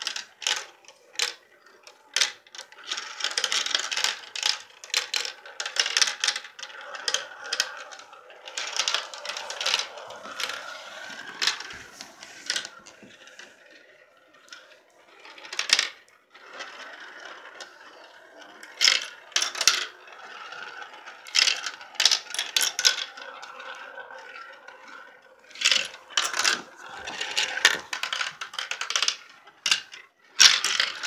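Marbles rolling around the plastic funnels of a marble run: a continuous rolling rattle with many sharp clicks as they knock together, strike the plastic and drop through the funnel holes.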